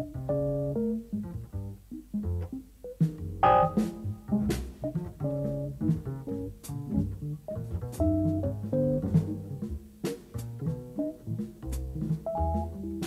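Live jazz-rock band music: electric piano playing short, broken chords and runs over double bass and drum kit, with cymbal hits throughout.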